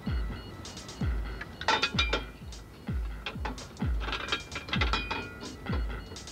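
Electronic background music: a deep kick drum that drops in pitch, about once a second, under clattering metallic percussion.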